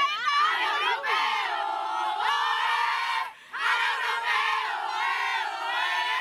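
A group of young women footballers shouting and cheering together, many voices at once. The noise breaks off for a moment a little past halfway, then starts up again.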